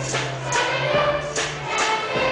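A large children's choir singing with instrumental accompaniment, over a steady percussive beat of about two strokes a second.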